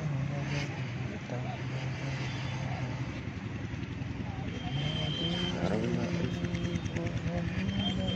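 A voice in long held notes that step in pitch, like chanting or singing, over a steady low rumble. A brief thin high whistle-like tone sounds about five seconds in and again at the end.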